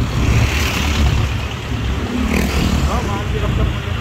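Ride on a motor scooter through street traffic: steady engine and road noise with a heavy low rumble of wind on the microphone.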